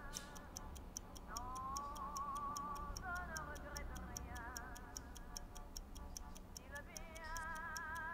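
Steady, even ticking, about four ticks a second, over soundtrack music of long-held wavering tones with a heavy vibrato.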